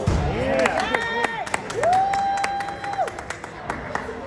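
Spectators clapping, with sharp close claps over scattered applause, and a held high cheering call that is sustained for about a second in the middle.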